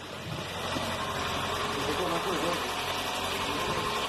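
Freshly rebuilt four-cylinder 2.0 engine of a 2012 VW Jetta A4 idling steadily just after its first start. It has a light clatter from the hydraulic lifters, which are still filling with oil.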